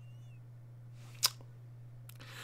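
A single sharp click a little over a second in, over a steady low hum.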